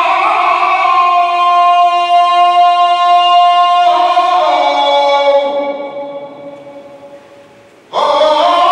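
A saetero singing a saeta unaccompanied: one long held note for about four seconds, then a falling, wavering line that fades away. A new phrase starts loudly right at the end.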